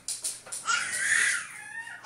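A baby's high-pitched squeal starting about half a second in and lasting about a second, dropping in pitch at the end, with a shorter, fainter call just before the end.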